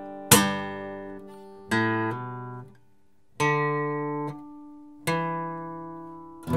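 Steel-string acoustic guitar strummed in four chords about a second and a half apart, each struck once and left to ring and die away, with a short silence before the third.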